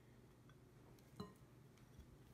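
Near silence with one faint glass clink about a second in, a small glass bowl knocking against a glass mixing bowl as mirin is poured in.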